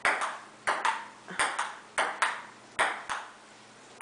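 Table tennis ball clicking off paddles and the table in a quick rally: about ten sharp ticks, many in close pairs, stopping about three seconds in.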